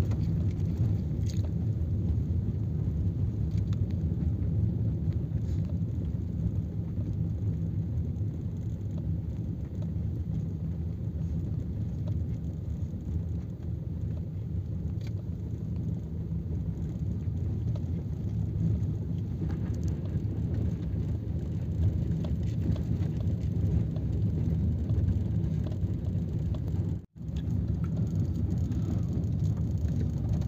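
Steady low rumble of a vehicle's engine and tyres, heard from inside the moving vehicle. The sound cuts out for an instant near the end.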